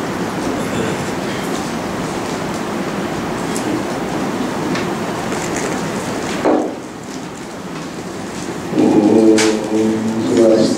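A steady rushing noise for the first six seconds or so, then a brief knock and a quieter lull. About nine seconds in, a man's voice begins chanting the Sanskrit closing prayer on held, sung pitches.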